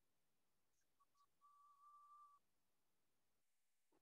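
Near silence, broken only by a faint, steady whistle-like tone: two short blips about a second in, then a held note lasting about a second.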